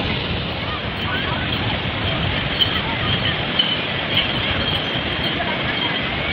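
Steady noise of sea waves breaking on the beach, with wind on the microphone and faint distant voices.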